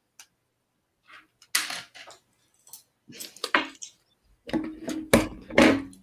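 Loose plastic LEGO pieces clicking and rattling as hands sort through them, a few scattered clicks at first, then a busier run of louder clacks near the end.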